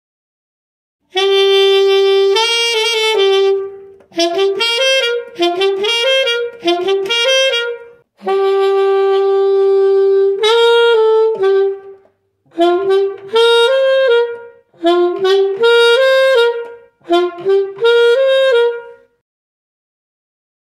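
Solo alto saxophone, unaccompanied, playing a short melody phrase by phrase. It opens with a long held note, then short runs of rising notes, with brief breaks between phrases. It starts about a second in and stops about a second before the end.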